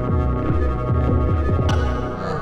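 Electronic dub track: a synth bass pulses in quick downward pitch drops, about four or five a second, under sustained synth tones, with a sharp high percussion hit near the end.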